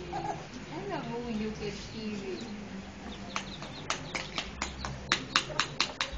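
Young children's voices in high, gliding babble, then a run of about ten sharp clicking taps, roughly four a second, as small containers and lids are knocked about on the concrete.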